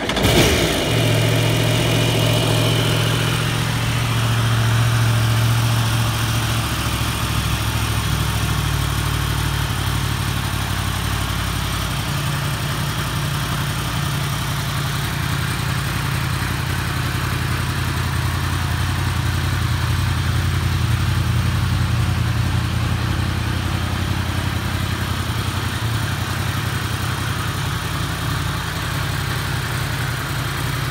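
2015 Yamaha YZF-R1's 998 cc crossplane inline-four, breathing through an aftermarket carbon-fibre muffler, starting up and catching right at the outset. It runs a little faster for the first few seconds, then settles into a steady idle.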